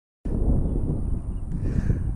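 Wind buffeting the microphone: an uneven low rumble that cuts in suddenly about a quarter second in, with a faint steady high whine above it.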